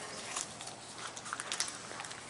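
Footsteps on a hard tiled floor: a few irregular sharp heel clicks over a low steady room hum.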